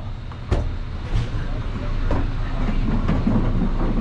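A TRUE stainless-steel commercial freezer being pulled out on its caster wheels, rolling across the floor with a few knocks in the first two seconds.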